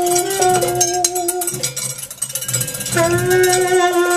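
Alto saxophone holding long notes in a free jazz improvisation, with drums and cymbals behind it. The saxophone drops back about a second and a half in and comes in again with a new, fuller note about three seconds in.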